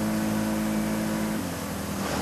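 Small boat's outboard motor running with a steady hum over wind and water hiss, then faltering about one and a half seconds in as its pitch steps down and the sound thins. The motor keeps cutting in and out, which the owner blames on an old wire.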